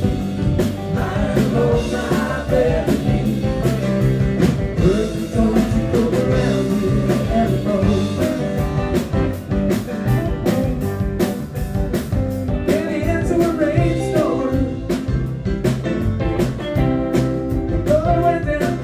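Live rock band playing: electric and acoustic guitars, electric bass, keyboard and drum kit, with the drums keeping a steady beat.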